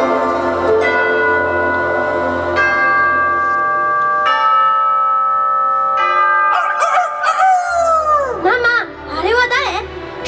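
Show soundtrack over loudspeakers: a clock bell strikes four times, slow and ringing, each stroke left to ring into the next. In the last few seconds, swooping, wavering melodic music takes over.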